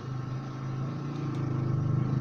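A steady, low engine hum that grows gradually louder.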